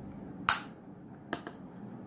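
A sharp click about half a second in, followed by two fainter clicks close together near the middle.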